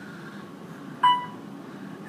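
A single elevator chime, one ding about a second in that rings briefly and fades.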